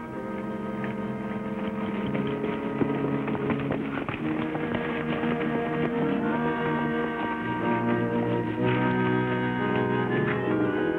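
Dramatic orchestral film score swelling louder, with the clip-clop of horses' hooves faintly beneath it.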